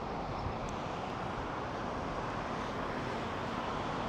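Steady background noise of road traffic and wind on the microphone, with no distinct events.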